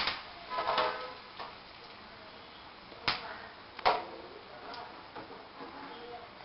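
Whole spices, curry leaves and dried red chillies going into hot oil in a small steel kadhai for a tadka: a few sharp clicks and crackles, one right at the start and two about three and four seconds in, over a faint background.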